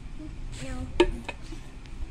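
A toddler's short "no", then a sharp knock about halfway through with a lighter knock just after, as a container is set down on a hard floor.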